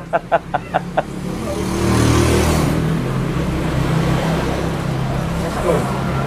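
Quick repeated spoken syllables, then a motor vehicle's engine running steadily, swelling about two seconds in.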